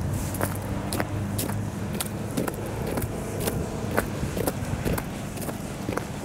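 Footsteps on packed snow at a steady walking pace, about two steps a second, over the low hum of an idling engine that fades after the first second or so.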